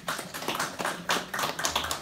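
Applause from a small audience: many overlapping, irregular hand claps.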